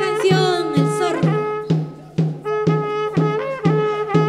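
Andean carnaval band music: saxophone and clarinet playing a melody with a wavering vibrato over a bass drum beating steadily about twice a second.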